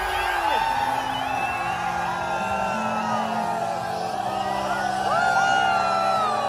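Large crowd cheering and whooping, many voices yelling at once, over held electronic chords that change every second or so with no beat.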